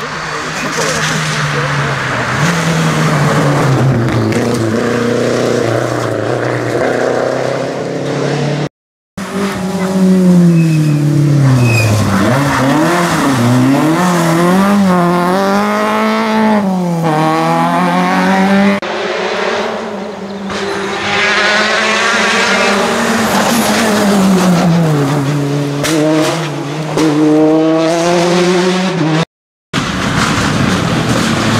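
Small rally cars' petrol engines at full throttle: first a Renault 5 with a steady engine note climbing as it approaches, then, after a cut, a Peugeot 106 whose engine pitch repeatedly drops and climbs again through braking, downshifts and acceleration.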